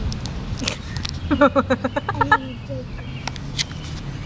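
A voice in a quick run of about eight short, repeated syllables, each falling in pitch, lasting just over a second, with a few light clicks before and after.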